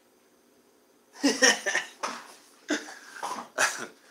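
About a second of near silence, then a man laughing in four or five short, breathy bursts.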